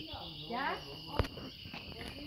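Steady shrill chorus of insects. A person's voice comes in briefly about half a second in, and there is a single sharp knock a little after a second.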